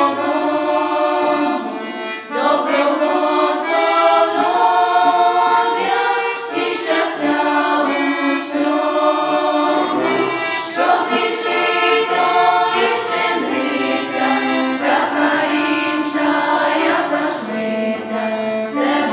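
Choir of young singers, mostly women, singing a Ukrainian Christmas carol (koliadka) in sustained, continuous phrases, with an accordion accompanying them.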